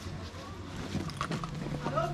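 A backpack being tried on and its straps handled: light rustling and a few clicks about a second in, under faint background voices. A steady low hum comes in near the end.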